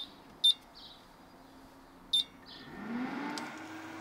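Two short, high electronic beeps about a second and a half apart as the inverter-powered circuit comes back on, then a cooling fan spinning up with a low hum that rises in pitch and settles near the end.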